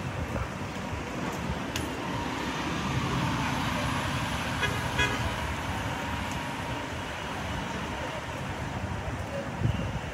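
Street traffic: a vehicle passing close, its sound swelling through the middle and easing off, with a faint steady tone and a short run of clicks about halfway.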